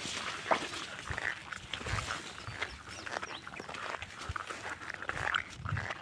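Tall dry grass rustling and crackling against the body and camera, with irregular footsteps.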